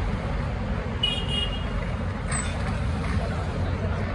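City street traffic: cars and vans moving slowly past at close range, a steady rumble of engines and tyres, with a brief high-pitched toot about a second in.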